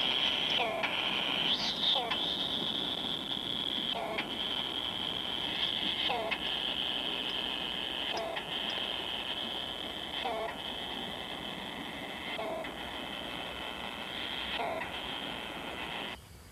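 Collared kingfisher chicks calling in the nest, a short call about every two seconds over a steady high-pitched drone.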